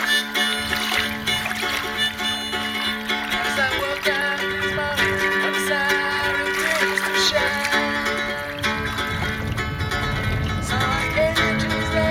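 Hohner Blues Harp harmonica in the key of D playing a blues line of held and bending notes over a strummed Yamaha GL1 guitalele.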